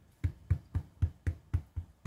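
An ink pad dabbed again and again onto a foam rubber stamp, making a steady run of short knocks about four a second.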